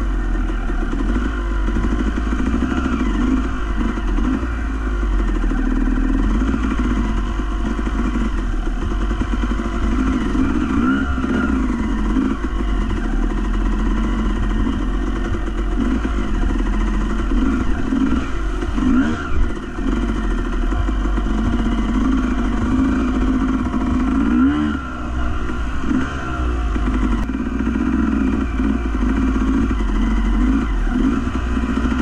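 Off-road motorbike engine running under load on a trail, its pitch rising and falling over and over as the throttle is worked, over a steady low rumble.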